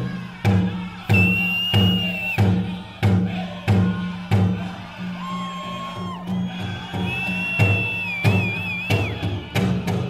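Powwow drum group singing a show song over a big drum struck in a steady beat, about two beats a second. High drawn-out whistle-like tones rise over the song twice, the second ending in a wavering trill.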